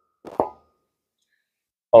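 A single short, soft knock about half a second in: a dumbbell set down on the rubber gym floor.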